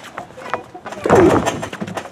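A sharp, loud slap of a wrestling strike landing on bare skin about a second in, with a falling yell over it.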